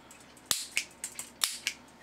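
Piezo barbecue igniter with a small antenna clicking as it fires sparks: two sharp snaps about a second apart, the first the loudest, with fainter clicks between. The spark is picked up by the coherer detector, whose metal filings then conduct.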